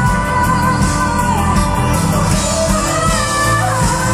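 Live pop song: a female singer holding and bending long sung notes over a band accompaniment.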